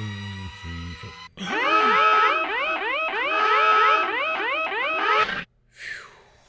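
Cartoon-style advert sound effects over music: low wobbling tones, then, from about a second in, a dense run of repeating rising boing-like sweeps that cut off suddenly shortly before the end.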